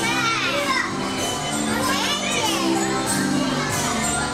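Carousel music with steady held notes, with high children's voices rising and falling over it twice, once at the start and once about two seconds in.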